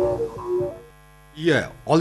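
The last notes of a melodic bulletin signature tune, then a brief pause filled with a low mains hum. A newsreader's voice starts speaking near the end.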